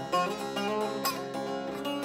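Long-necked bağlama (saz) playing a lively run of picked notes, each with a sharp attack, the opening of a Turkish folk dance tune.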